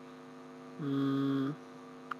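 Steady electrical mains hum on the recording, with a man's brief held vocal 'mmm' filler sound lasting under a second, about halfway through.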